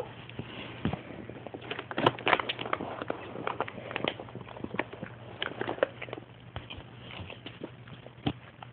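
A French bulldog crunching at a sunflower seed in its shell: irregular small cracks and clicks, busiest about two seconds in.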